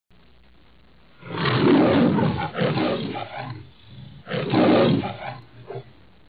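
A lion roaring twice as a logo sound effect: two long, rough roars, the first about a second in and the second about four seconds in.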